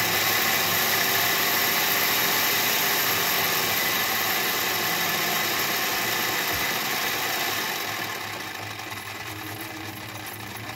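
Toy live-steam engine running, with a steady steam hiss and the rapid clatter of its mechanism and of the belt-driven Lego piston engine it turns. About eight seconds in, the hiss drops off and a quicker, lighter rattle is left.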